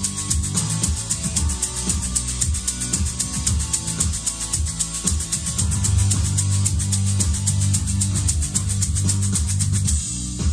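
Homemade shaker, a cardboard crisp tube half filled with dry couscous, shaken in a quick, even rhythm of several strokes a second. It plays over backing music.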